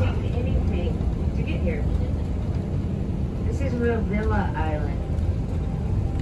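Steady low rumble of a moving tour vehicle heard from inside the cabin, with indistinct voices briefly near the start and again about four seconds in.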